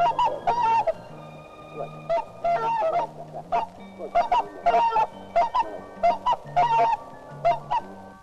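Whooper swan calling again and again. Each call is a short note that rises and falls, and they come in runs of two or three.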